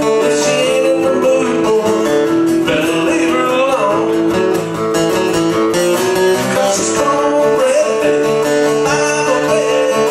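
Acoustic-electric guitar strummed steadily, playing a country song.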